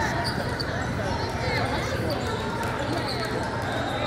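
A basketball bouncing on a hardwood court and sneakers squeaking, over the chatter of many voices echoing in a large hall.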